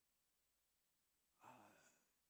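Near silence: room tone, then about a second and a half in a man's faint, short "uh" as he draws breath to speak.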